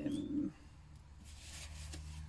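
A drawn-out spoken hesitation "uh" in the first half-second, with a brief high bird chirp over it, then a faint steady low hum.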